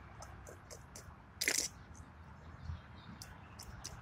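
A person drinking from an aluminium can: faint sips and swallows with small wet mouth clicks, and one brief louder noisy burst about one and a half seconds in.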